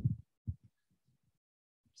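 Handling noise from a handheld microphone being passed from one person to another: a few short, dull thumps in the first second.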